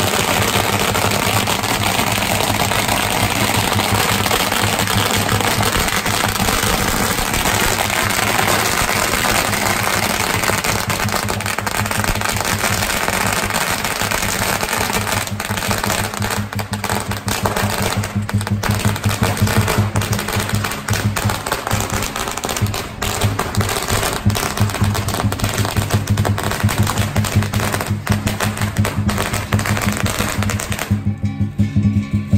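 A long string of firecrackers going off in a dense, continuous crackle that breaks into separate, sparser pops about halfway through. Lion dance drum and cymbals play underneath.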